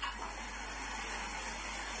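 A pause in speech: only the recording's steady background hiss, with a faint low hum beneath it.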